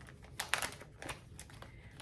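Faint handling noise: a few light clicks and rustles as a cross-stitch pattern is picked up, with a small cluster of taps about half a second in.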